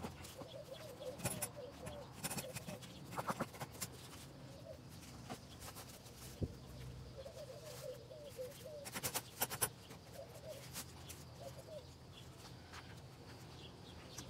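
Gloved hands pressing damp refractory mix into a wooden mold: faint scraping with a few short knocks, the sharpest about nine seconds in. A bird's faint, low warbling calls come and go behind it.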